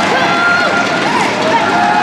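Short high squeaks of players' court shoes on a wooden gymnasium floor, over voices echoing in the hall.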